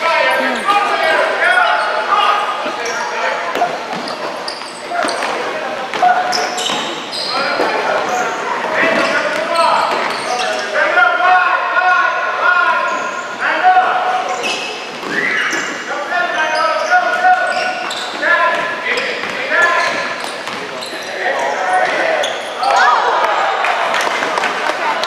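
Voices calling out across an echoing gymnasium during a youth basketball game, over the bounce of a basketball on the wooden court floor.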